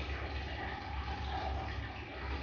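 Faint soft rustling of a thin sock being rolled up by hand, over a steady low background hum.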